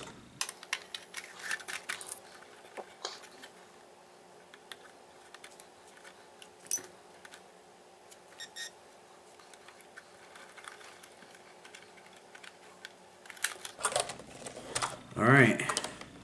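Light, scattered clicks and taps of small plastic parts and a wire connector being handled as a battery is fitted into a 1/18-scale RC crawler, over a faint steady hum.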